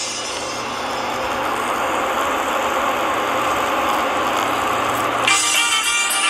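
Steady noise of a car running close by on the street. About five seconds in, band music cuts back in over it.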